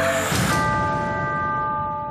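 Intro theme-music sting: a short swish about a third of a second in, then a sustained bell-like chord that rings on steadily.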